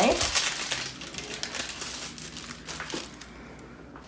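Crinkling and rustling of a clear plastic packet and paper as die-cut stickers are handled, busiest in the first second and thinning out by about three seconds in.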